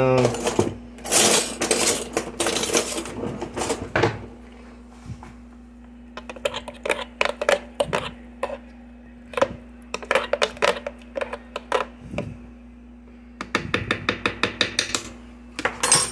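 A spoon scraping and tapping inside a plastic blender jar as thick blended tomato sauce is scooped out: noisy scrapes in the first few seconds, then two runs of quick clicking taps.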